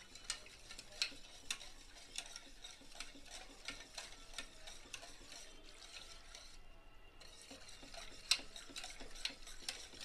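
A spoon stirring a watery spice-and-curd mixture in a stainless steel bowl, clinking lightly against the metal sides in irregular ticks two or three times a second. There is a brief pause about two-thirds of the way through, and the sharpest clink comes soon after.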